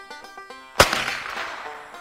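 A single sharp shot from a .22 rimfire carbine about a second in, trailing off in a fading echo. Faint background music plays underneath.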